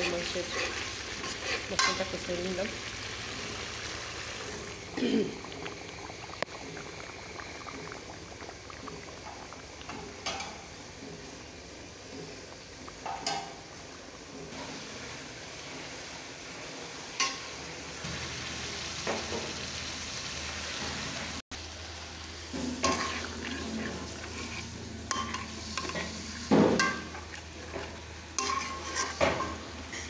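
Food frying and sizzling in oil in a metal karahi while a metal spatula stirs and scrapes it, with scattered clicks and knocks of the spatula against the pan.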